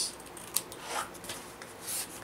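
Scissors snipping through the paper covering at the corner of a book board, with paper and board rubbing and rustling as they are handled. One sharp snip about a quarter of the way in, then brief swishing rustles around the middle and near the end.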